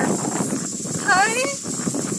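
A goat bleats once about a second in, a short quavering call.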